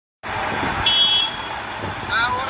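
Heavy trucks running in a slow convoy, a steady rumble with street noise, and a short shrill tone, like a whistle or beep, about a second in.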